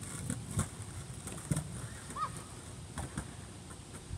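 Skateboard wheels rolling away over pavement with a low rumble, and a few sharp clacks and knocks from the board as it goes. A single bird chirp a little over two seconds in.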